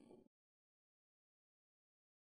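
Digital silence: no sound at all.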